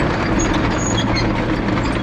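Caterpillar 953C track loader's diesel engine running steadily under load while its steel tracks clank, with scattered short high squeaks from the undercarriage as it drives off.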